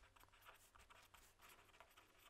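Faint scratching of a pen writing on paper in short irregular strokes.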